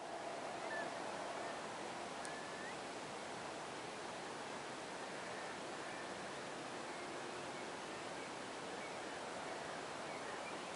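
Steady outdoor rushing noise with a couple of faint high chirps in the first three seconds.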